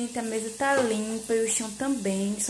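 A woman speaking Portuguese, with a faint sizzle of meat frying on the stove underneath.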